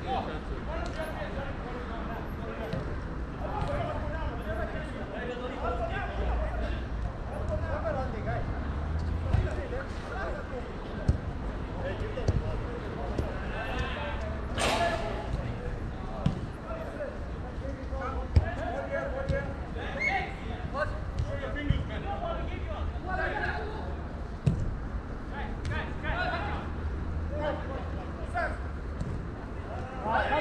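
Players calling and shouting to each other across a football pitch, with occasional sharp thuds of the ball being kicked; one brighter, louder hit comes about halfway through.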